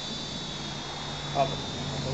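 YIBOO UJ819 Tron mini quadcopter in flight, its four small motors and propellers giving a steady high-pitched whine over a low hum.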